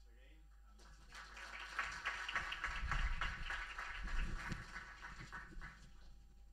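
Audience applauding, starting about a second in, swelling and then fading away near the end.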